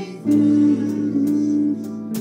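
Live country gospel band playing, with guitars and singing voices. A loud chord comes in about a quarter second in and is held for over a second, then the playing drops back.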